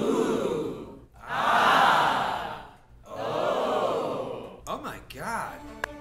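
A person breathing loudly in three long, noisy breaths that swell and fade, with a few short voice sounds near the end.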